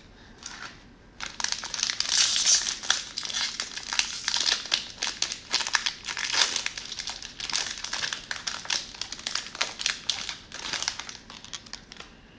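Plastic wrapper of a Donruss cello pack of trading cards being torn open and crumpled in the hands. It crinkles densely from about a second in until near the end.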